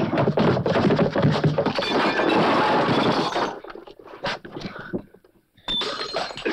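Fistfight sound effects: a dense run of punches and crashing for about the first three and a half seconds, then a few separate thuds.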